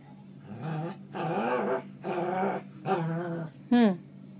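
A small long-haired dog growling and grumbling in four short bouts, then giving one short high yip near the end.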